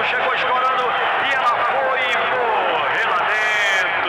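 Excited radio goal commentary: a man calling the goal at speed, then holding one long drawn-out shout near the end. It is heard through the narrow, muffled bandwidth of an AM radio broadcast.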